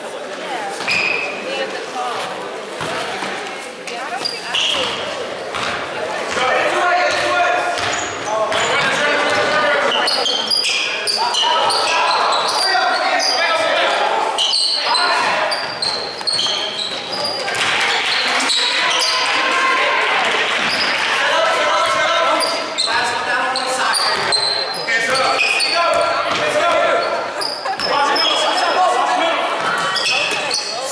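Basketball game in a school gymnasium: the ball bouncing on the hardwood court amid players' and spectators' voices, all echoing in the hall.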